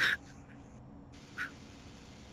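Short breathy sounds from a person: a brief sharper one at the start and a fainter one about a second and a half later, over faint room hiss.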